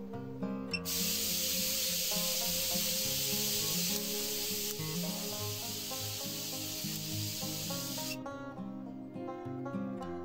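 High-voltage corona discharge hissing from the copper-wire electrodes of a DIY multistage ion thruster, starting suddenly about a second in and cutting off suddenly about eight seconds in: the thruster is energised and blowing ionic wind. Background music plays underneath.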